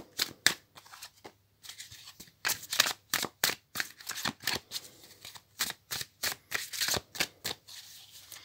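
A tarot deck being shuffled by hand: a quick run of sharp card flicks and slaps, about three a second, with a brief pause about a second and a half in.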